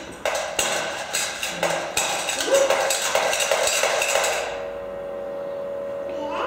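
Pump-action humming spinning top being wound up: the plunger is pumped with a run of sharp clacks, about three a second, then the top spins free with a steady humming chord from about four and a half seconds in.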